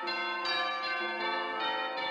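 Church organ playing: a low note held steady underneath while the chords above change every half second or so.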